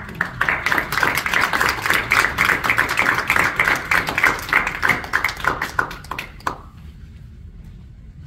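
Small audience clapping, a dense patter of hand claps that dies away about six and a half seconds in.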